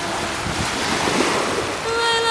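Surf washing up on the sand and wind buffeting the microphone, an even rushing noise. A sung note fades out just at the start, and a woman's unaccompanied singing voice comes back in near the end.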